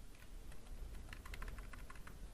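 Faint, quick run of light computer keyboard and mouse clicks, a few at first, then about ten in close succession in the second half.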